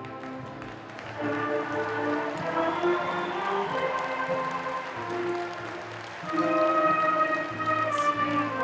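High school concert band playing sustained chords on brass and woodwinds, swelling louder about a second in and again near the end.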